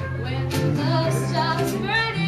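Live band performance: a woman singing lead into a microphone over a steady bass line and accompaniment.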